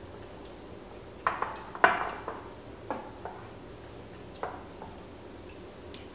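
Silicone spatula knocking and scraping against a glass mixing bowl while stirring a thick peanut sauce: a handful of light, irregular clinks, the loudest about two seconds in.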